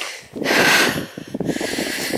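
A person breathing hard while walking: one long breath about half a second in, then a shorter one.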